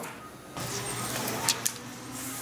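Backing liner being peeled off a strip of peel-and-stick edge banding: a steady tearing noise that starts about half a second in, with two sharp crackles a little past the middle.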